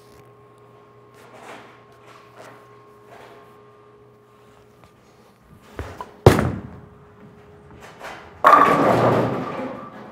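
A urethane bowling ball lands on the lane with a sharp thud about six seconds in and rolls, and a little over two seconds later hits the pins with a sudden crash that dies away over about a second and a half: a strike.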